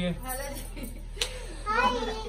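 Brief low voices of a woman and young children, with a single sharp click about a second in and a short rising voice near the end.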